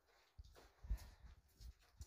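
Faint footsteps: a few soft, irregular thuds as a person walks out through a doorway, otherwise near silence.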